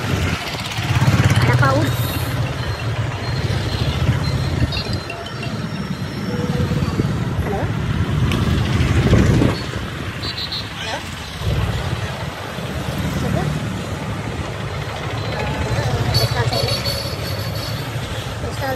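A motor vehicle's engine runs with road noise as it drives along a street; the low hum eases off for a moment a little past halfway.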